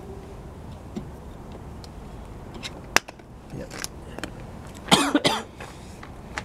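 Unicycle pedal being loosened from its crank with a pedal spanner: a single sharp metallic click about three seconds in, then a few faint knocks. Near the end comes a short cough.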